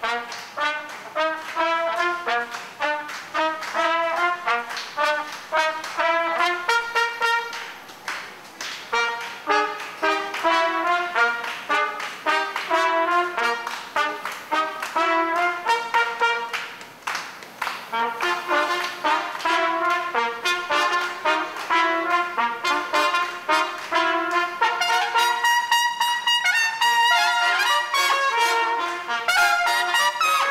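Trumpet playing a fast melody of short, tongued notes, with bright high phrases near the end.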